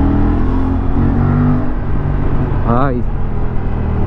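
Aprilia RS 457's 457 cc parallel-twin engine pulling steadily under acceleration, with wind rush over the microphone. A short voice cuts in about three seconds in.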